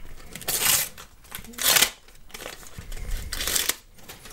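A Panini sticker packet being torn open and its stickers handled: three short rustling, tearing bursts, about half a second in, near the middle and shortly before the end.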